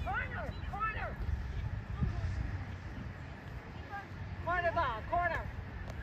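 Distant high-pitched voices calling out twice across an open field, over a steady low wind rumble on the microphone.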